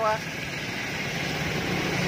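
Toshiba belt-driven electric air compressor running with a quiet, steady low hum that grows gradually louder, having cut in as the tank pressure dropped below about 7 kg/cm².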